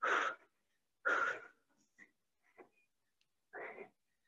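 A woman breathing hard during a cardio exercise: three breathy exhales, the first two about a second apart and the third near the end, with a couple of faint ticks in between.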